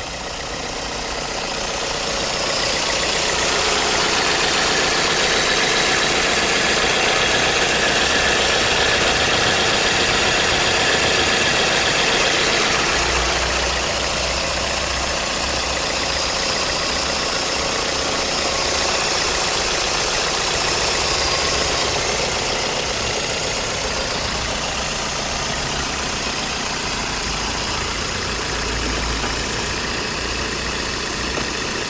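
Toyota ist (NCP60) four-cylinder VVT-i petrol engine idling steadily, heard close up in the open engine bay. It grows louder over the first few seconds, then holds even.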